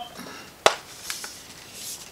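A metal Blu-ray steelbook case being opened by hand: one sharp click about two-thirds of a second in, then a few faint ticks and a soft rubbing of the case being handled near the end.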